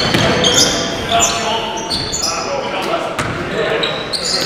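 Basketball being played on a hardwood gym floor: sneakers squeaking in short high chirps, a few ball bounces, and players' indistinct voices, all echoing in the hall.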